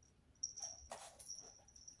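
Faint scuffling and rustling of two 10-week-old kittens playing, batting a receipt and nail file about on a laminate floor.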